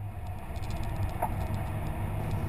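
Steady low rumble of road traffic, with a faint click about a second in.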